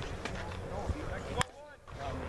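Faint background voices from people at a ballfield, with one sharp click about a second and a half in.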